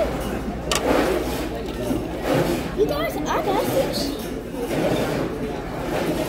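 Several people talking at a table, the words indistinct, with a sharp click a little under a second in.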